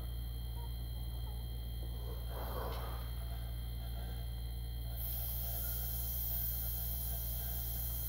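A steady low hum under a faint, thin airbrush air hiss as paint is sprayed at low pressure. The hiss grows stronger about five seconds in, and there is a brief soft rustle in the middle.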